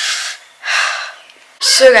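A woman laughing breathily under her breath: two airy, unvoiced puffs of breath.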